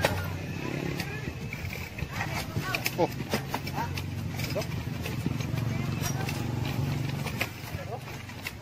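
Vehicle engine running steadily at low speed, with clicks and knocks from the vehicle jolting over a rough dirt road.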